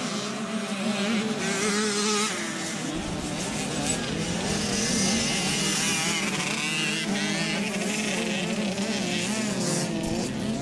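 Several motocross motorcycle engines revving as the bikes go by, their pitch rising and falling.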